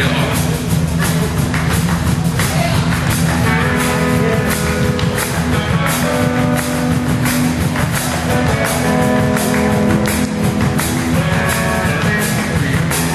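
Rock-and-roll band music: a driving drum beat with cymbals, and guitar and other sustained instrument notes coming in about four seconds in.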